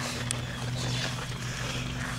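Steady drone of a distant lawn mower engine: a low, even hum with no change in pitch.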